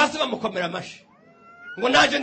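A man preaching into a microphone. In a short pause about a second in, a faint, high, thin sound rises slightly in pitch before the voice resumes.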